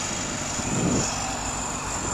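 Steady low rumble of an engine running, with a constant background hiss.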